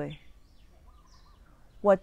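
A woman's voice finishes a phrase, then pauses for about a second and a half over faint background noise with a faint short chirp, and starts speaking again near the end.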